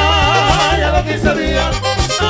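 Merengue típico band playing an instrumental break between sung verses: a lead melody wavering up and down in pitch over a steady, repeating bass and percussion pattern.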